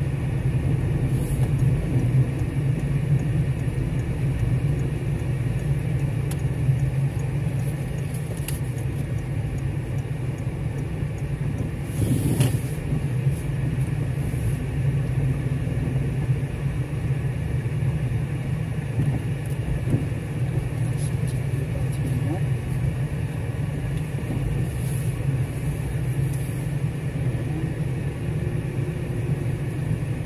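Car driving, engine and road noise heard from inside the cabin as a steady low rumble, with a brief louder noise about twelve seconds in.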